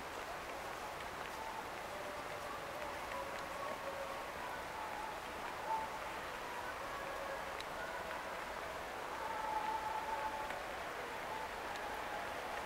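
Outdoor plaza ambience: a steady wash of background noise with faint, indistinct voices of passers-by.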